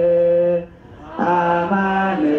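Unaccompanied male chanting of an Ethiopian Orthodox hymn (mezmur) in long held notes. The line breaks for a breath just after half a second in and resumes a little after a second, stepping up in pitch near the end.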